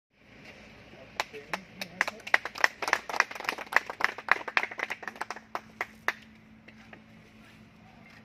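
A small group of people clapping, starting about a second in and dying away about six seconds in, over low background voices.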